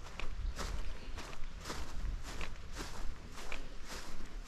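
Footsteps of a person walking across a dry grass lawn, an even pace of about two steps a second.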